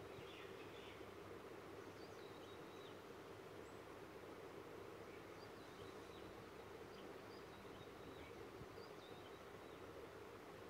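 Near silence: a faint steady background hum, with a few faint, short high chirps scattered through.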